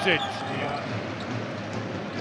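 Basketball arena crowd noise with a ball bouncing on the court.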